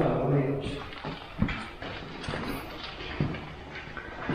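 Faint, indistinct voices at the start, then room noise with two short soft knocks, about a second and a half in and again about three seconds in.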